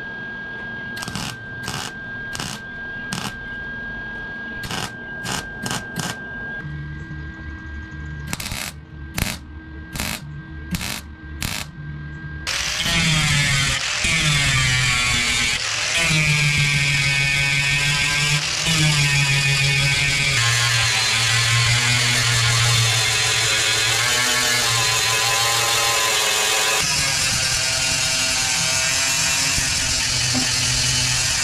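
A welder laying a string of short tack welds, about fifteen brief bursts, fixing a new steel patch panel to a 1941 Chevy cab. About twelve seconds in, an angle grinder with a flap disc starts and keeps grinding the welds flush on the kick and rocker panels, its pitch dipping each time it is pressed into the steel.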